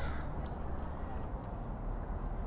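A crow caws briefly at the very start, over a low steady rumble.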